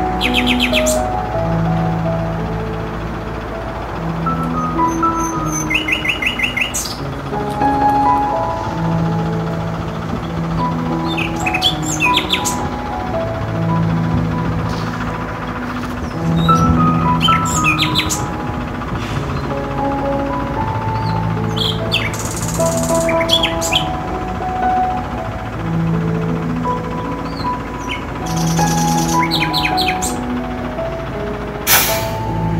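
Slow, calm instrumental background music with held notes, overlaid with bird chirps that come in short runs every five or six seconds.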